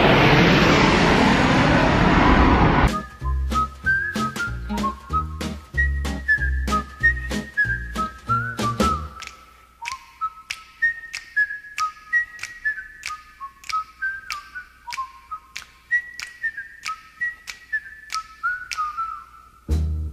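For about the first three seconds, loud roar of a low-flying jet airliner overhead. It cuts off abruptly into music: a whistled melody of short sliding notes over a bass beat with regular clicks; the bass drops out about nine seconds in, leaving the whistled tune and clicks.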